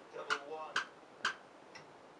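Three sharp clicks about half a second apart, over faint background speech.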